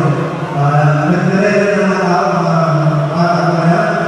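Live concert music: a male voice singing long, held notes through the stage sound system.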